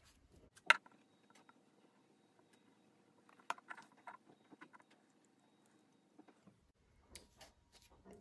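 Faint handling sounds on a tabletop: scattered sharp clicks and light taps as paper rings, a glue tube and a PVC pipe are picked up and worked by hand. The sharpest click comes within the first second, with a cluster of lighter taps around the middle.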